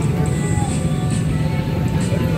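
Busy outdoor market ambience: background music playing over a steady low rumble of traffic.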